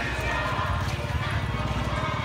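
Busy market ambience: crowd chatter with music playing over it and a low, rapid, even throb underneath.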